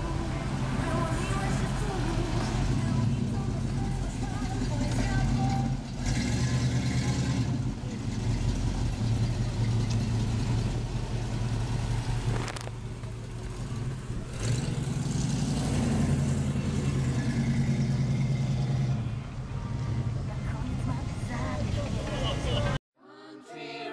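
A car engine running at low revs, dropping off briefly a few times, with voices in the background.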